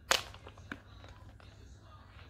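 A sharp click, then a fainter one about half a second later: handling noise while lacing up a white patent stiletto, the lace straps and shoe knocking against the wooden floor.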